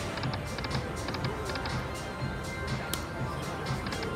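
Aristocrat Dragon Link 'Golden Century' slot machine playing its spin sounds: electronic game music with a steady beat and repeated clusters of light ticks as the reels spin and stop.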